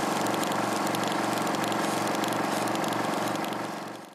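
Electronic intro sound: a sustained, dense synthesized drone with a low hum pulsing about three times a second, fading out near the end.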